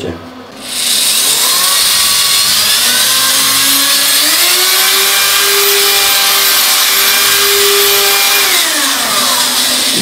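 Electric drill boring through glazed ceramic wall tile with a tile drill bit. A steady motor whine over the high hiss of the bit grinding the tile starts about a second in; the motor's pitch rises about four seconds in and drops again near the end.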